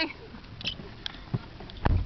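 Camera handling noise as someone climbs into a car: faint rubbing with a few small knocks, then one louder, deep thump near the end.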